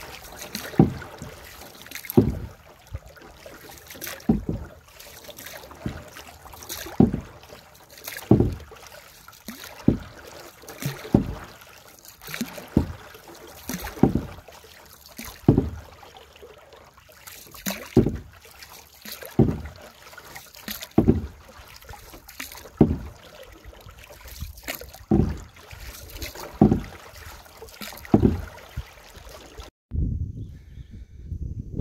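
Paddle strokes of a small hand-paddled sampan on a lake, one about every second and a half, each a short splash of the paddle in the water, over a soft wash of water.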